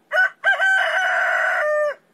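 Rooster crowing sound effect: a short opening note, then a long held call that drops in pitch just before it cuts off.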